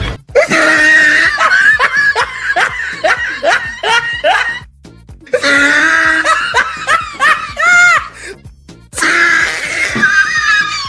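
Bursts of laughter, quick 'ha-ha' syllables several a second, over background music, breaking off briefly about halfway through and again near the end.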